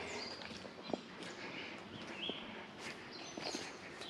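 Footsteps through woodland undergrowth and leaf litter, with a few soft clicks, and several short bird calls in the background.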